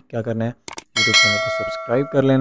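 Subscribe-button sound effect: a quick double click, then a bright bell chime that rings out for about a second.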